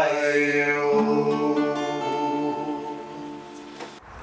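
Two acoustic guitars ringing out on the song's final chord with a held sung note, fading steadily away as the folk song ends.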